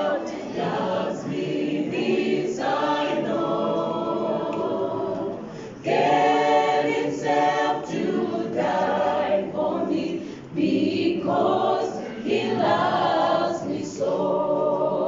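A mixed choir of men and women singing a gospel song a cappella, in sung phrases with brief breaks about six and ten seconds in.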